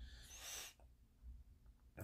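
A short breath, about three-quarters of a second of airy noise, then near silence.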